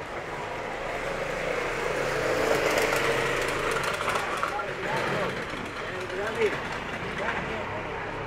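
City street sound: a motor vehicle passing, swelling to its loudest about two and a half seconds in and then fading, with passersby talking and a single short knock near the end.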